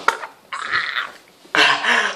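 A young man coughing and gagging hoarsely, his throat irritated by a mouthful of dry ground cinnamon. It comes in two rough bursts, the second louder.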